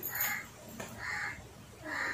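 A bird calling three times, short calls about a second apart.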